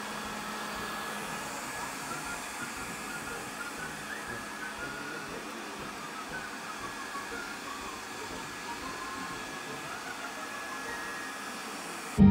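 Robot vacuum cleaner running across a laminate floor: a steady whirring of its motor and brushes.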